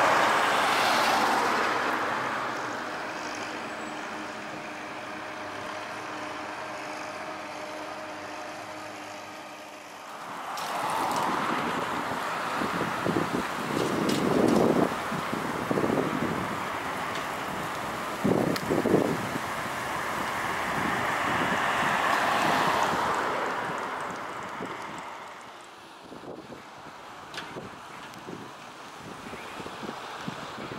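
Road traffic passing: a lorry drives by and fades away over the first few seconds. A second vehicle then comes closer from about ten seconds in, is loudest a little past the middle and fades, with gusts of wind buffeting the microphone.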